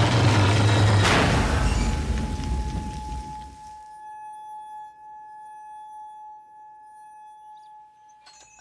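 Dramatized crash of a derailing train: a loud rumbling crash with a second impact about a second in, fading away over the next few seconds. A single steady high ringing tone then sets in and holds, like ringing in the ears after the crash.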